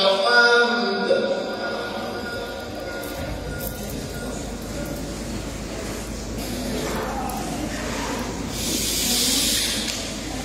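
A male Quran reciter's voice ends a melismatic phrase in the first second and fades into the hall's echo, leaving a pause of low, rumbling room noise. A breathy hiss rises near the end.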